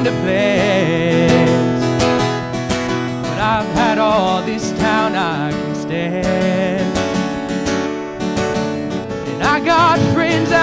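Acoustic guitar strummed live as accompaniment in a country-style song, with a voice singing wavering, vibrato phrases over it, one in the middle and another starting near the end.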